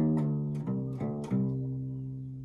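Acoustic bass guitar being plucked: a short run of about five notes, the last one left ringing and slowly fading.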